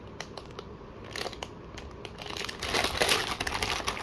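Plastic Oreo cookie packet crinkling as it is handled and turned over in the hands: sparse crackles at first, growing denser and louder over the last couple of seconds.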